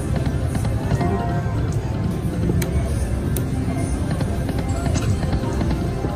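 Eureka Blast slot machine playing its game music and reel-spin sound effects over the steady din of a casino floor, as a paid spin plays out.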